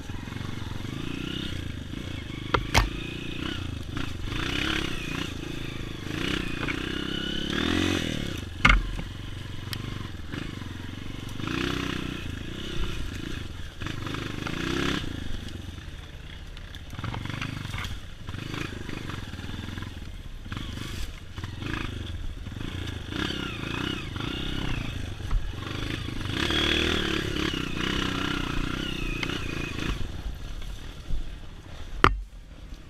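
Honda CRF230 dirt bike's single-cylinder four-stroke engine revving up and down, the pitch rising and falling as the throttle is worked on a rough trail. Sharp knocks come about three seconds in and about nine seconds in; the second is the loudest sound.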